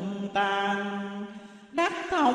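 A voice chanting Vietnamese scripture to a melody. It holds one long steady note that fades away, and a new phrase starts just before the end.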